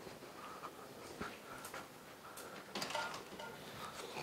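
Faint room noise with scattered soft knocks and rustles, loudest in a short cluster about three seconds in, under faint murmuring in the background.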